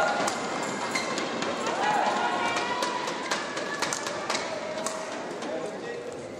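Badminton rally: sharp racket strikes on the shuttlecock and short shoe squeaks on the court, over a steady crowd hubbub with voices calling out.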